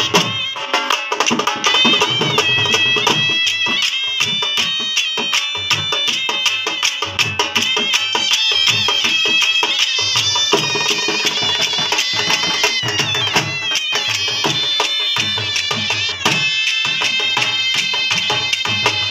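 Two dhol drums beat a fast folk rhythm under two shehnais playing a wavering, sliding melody, with brief breaks in the drumming near the end.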